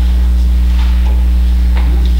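Loud, steady electrical mains hum with a buzz, unchanging throughout.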